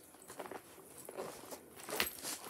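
Faint rustling with a few soft clicks from hands handling a cross-stitch project.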